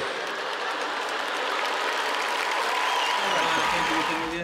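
Large audience applauding and laughing: dense, steady clapping from many hands.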